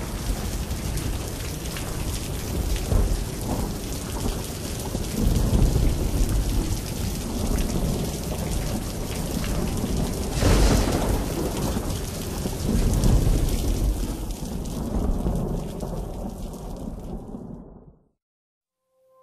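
Heavy rain with rolling thunder, with a sharp thunder crack about ten seconds in; the storm sound cuts off abruptly near the end.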